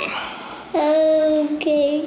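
A young girl singing one long held note, which breaks off briefly near the end and is picked up again at the same pitch.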